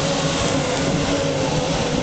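Racing Thundercat boats' outboard engines running at speed: a steady drone holding one even pitch over a dense rushing noise.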